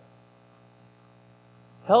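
Faint, steady electrical hum with a stack of even overtones, heard in a pause between spoken words. A man's voice comes back in near the end.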